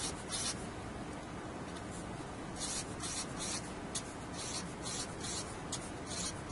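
Marker pen writing: a run of short, scratchy strokes of the felt tip as digits and commas are drawn one after another, with a pause of about two seconds near the start.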